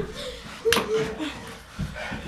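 A single sharp smack about two-thirds of a second in, followed by a brief held vocal sound, then a dull low thump near the end, with some faint voices.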